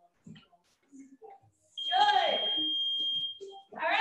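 A digital gym interval timer's single long, high, steady beep, lasting about two seconds from just before the halfway point, as its countdown reaches zero and marks the end of a work interval. A woman's loud exclamation sounds over the start of the beep, and she starts talking near the end.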